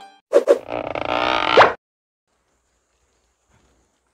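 A short cartoon sound effect from an animated intro: two quick blips, then a buzzy, pitched tone about a second and a half long that ends in a quick upward sweep, followed by silence.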